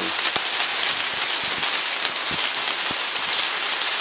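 Rain falling on the polycarbonate covering of an arched greenhouse, heard from inside: a steady hiss of rain with scattered single drop ticks.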